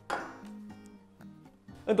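A single knife stroke through a cauliflower floret onto a wooden cutting board near the beginning, over soft background music with held notes.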